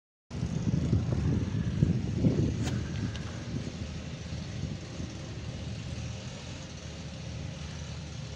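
Vehicle engine idling: a steady low hum, a little rougher in the first couple of seconds, with one sharp click about a third of the way through.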